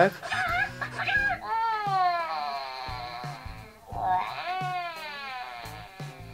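Hatchimals WoW Llalacorn interactive toy giving its electronic creature voice through its speaker: a few short chirpy squeaks, then two long falling whimper-like calls. This comes at the end of its hypnotized growing mode, as the stretched neck sinks back down.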